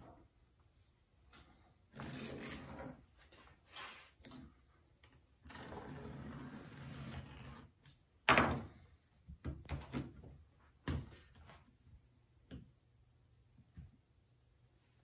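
A knife scraping through a soft clay slab as it is cut around a bowl, in a few stretches of dragging noise. A sharp knock about eight seconds in, followed by a few lighter taps and clunks of tools and clay being handled on the wooden worktable.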